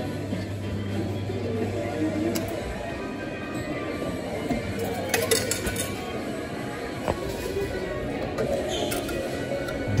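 Souvenir medal-pressing machine at work: a steady low motor hum that stops about six seconds in, then a few metallic clinks, all over background music.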